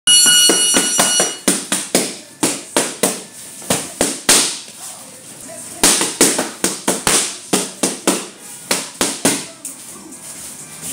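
Boxing gloves striking focus mitts in a fast run of sharp slaps, about three a second, with a short lull about halfway through. A steady tone sounds under the first hits for about a second and a half.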